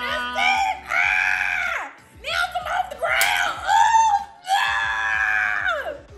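A person screaming in three long, high-pitched shrieks whose pitch rises and falls, a playful protest-scream during a slapping game.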